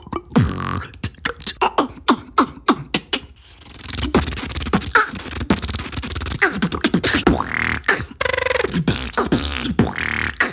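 Solo human beatboxing: a vocal-percussion beat of kick drums, snares and hi-hat sounds made with the mouth into a microphone. It breaks off briefly about three and a half seconds in, then a new beat starts with some held, hummed tones in it.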